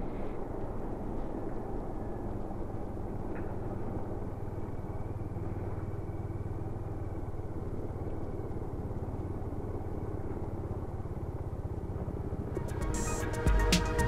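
Bajaj Dominar 400's single-cylinder engine running steadily while riding a dirt road, heard from on board with road and wind noise. Electronic music comes in near the end.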